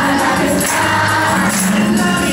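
A group of children and young adults singing a Christmas carol together, in unison like a choir.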